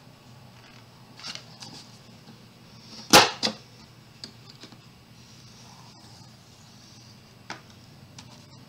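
Cardstock being scored for a box on a We R Memory Keepers 1-2-3 Punch Board: light paper handling and a few small clicks, with one loud sharp click about three seconds in, followed by a lighter click.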